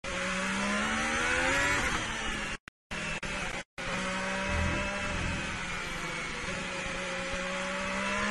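Ferrari SF71H Formula 1 car's 1.6-litre turbocharged V6 heard onboard, rising in pitch as it accelerates for about two seconds, then running steadily at a lower pitch. The sound cuts out completely twice, briefly, around three seconds in.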